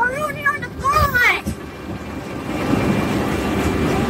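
A young rider's high voice calls out in rising-and-falling cries during the first second and a half. Then a roller coaster train's rolling rumble grows steadily louder.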